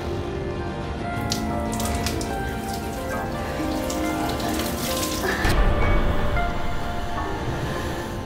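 Water poured from above, splashing over a person's head and clothes onto a tiled floor, under a sustained dramatic music score. A deep low boom comes about five and a half seconds in.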